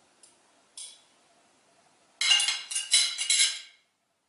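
Metal serving fork and spoon clinking as they are handled in one hand: a light click about a second in, then a quick run of ringing clinks lasting about a second and a half.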